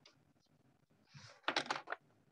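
Typing on a computer keyboard: a soft brush of noise, then a quick run of key clicks lasting about half a second in the second half.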